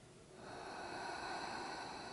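A person's long audible breath while holding a yoga stretch, rising about half a second in and fading out after a couple of seconds.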